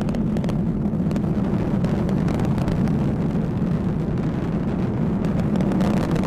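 Atlas V rocket's RD-180 first-stage engine heard during ascent, under a minute into flight: a steady, even low rumble.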